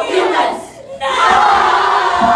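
Speech choir performers shouting together in short rhythmic bursts, then, about a second in, breaking into a long, loud group cry held by many voices at once.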